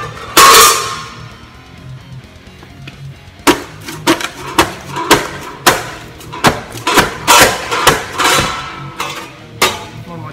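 A folded sheet-steel panel set down on a concrete floor with one loud ringing clang, then, from about three and a half seconds in, about a dozen sharp metallic thumps roughly two a second as it is jumped on to open out and shape the fold. Guitar music plays underneath.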